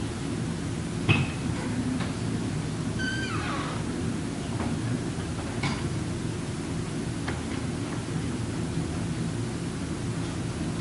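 Steady low rumble of conference-room noise, with a sharp knock about a second in, a brief falling tone around three seconds, and a few faint clicks and handling knocks as a laptop is set up at the panel table.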